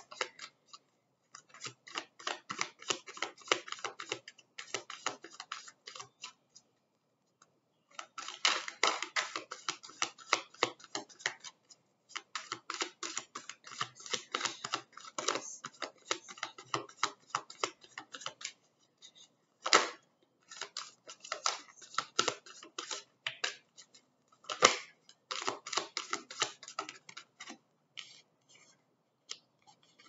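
A deck of oracle cards being shuffled by hand: bursts of rapid clicking as the cards slide and slap together, broken by short pauses, with two louder single knocks in the second half.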